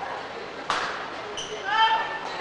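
Court shoe squeaking briefly on the badminton court floor near the end, a short rising squeak, after a single sharp smack about two-thirds of a second in. The hall's reverberation carries both.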